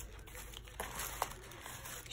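Faint rustling of cardstock cards being slid out of a paper pocket and handled, with a couple of light ticks about halfway through.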